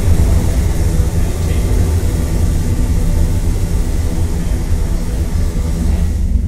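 A loud, steady, deep rumble with a hiss over it, a disaster-style rumble effect for stars falling to the Earth.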